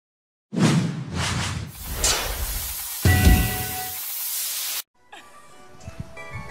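Intro sting of sound-effect whooshes and hits: noisy sweeps with a deep hit about three seconds in that carries a ringing tone, cutting off suddenly near the end.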